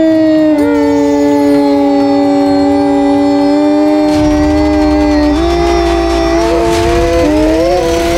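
Two voices chanting one long, held "om" in a meditation contest, the second joining about half a second in; the pitch steps up slightly a little past five seconds and wavers near the end as the chant strains.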